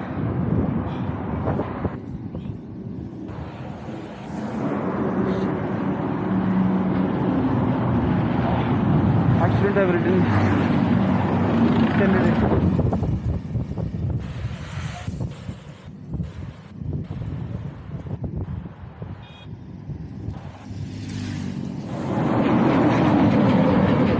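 A truck passing on the highway: its engine and tyre noise builds from about four seconds in, holds loud for several seconds and fades after about thirteen seconds.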